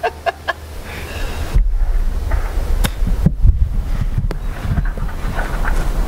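Brief laughter in short choppy bursts at the start, then wind buffeting the microphone: a low rumble with a few sharp knocks from about a second and a half in.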